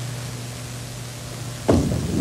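Steady hiss and low hum, then about one and a half seconds in a bowling ball lands on the lane with a sudden thump and starts rolling.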